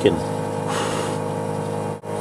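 Smoke machine running with a steady hum while it pushes smoke into the engine's intake to find a vacuum leak, with a short burst of hissing air about a second in.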